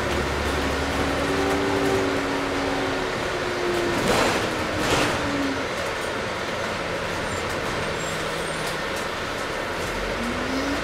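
Onboard cabin noise of a Volvo Olympian double-decker bus on the move: the engine and drivetrain whine steadily, then ease slightly lower in pitch. Two short, louder rattles come about four and five seconds in.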